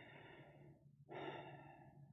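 A man breathing close to the microphone: two faint breaths, each lasting under a second, with a short gap between them.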